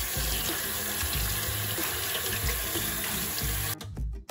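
Kitchen tap water running into a stainless steel sink and over a sweet potato being scrubbed by hand under the stream. It is steady, then cuts off suddenly near the end.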